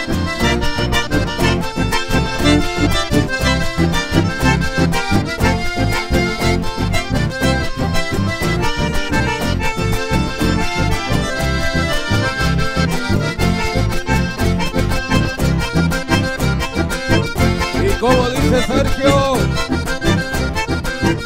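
Chamamé music led by an accordion, with a steady beat.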